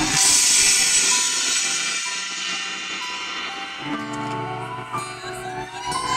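Live acoustic band ending a song: the final strummed chord and a bright crash ring out and fade over the first couple of seconds. A held note lingers, and high-pitched whoops from the audience come in near the end.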